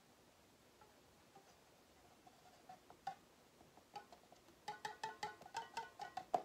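Faint, short ringing plinks and ticks from a road bike wheel being handled while sealant is poured into its tubeless tire. They come sparsely at first and quicken to a rapid run in the last second or so.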